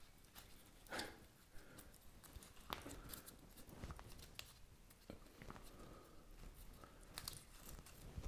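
Faint, scattered rustles and small crackles of hands fixing a moss-wrapped plant onto a dried branch, the clearest crackle about a second in.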